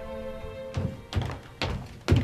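Held background music fades out under a second in. Then come four heavy footsteps on a wooden floor, evenly spaced about half a second apart.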